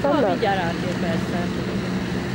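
Car ferry's engine running with a steady low hum as the ferry comes in to the landing ramp, with a person's voice briefly at the start.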